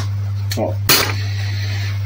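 Gentle light hammer taps on the metal body of a power steering pump: two sharp taps about half a second apart, the second louder, then the tapping stops. A steady low hum runs underneath.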